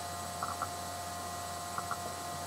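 Quiet room tone with a steady electrical hum, broken by a few faint light clicks about half a second in and again near the end.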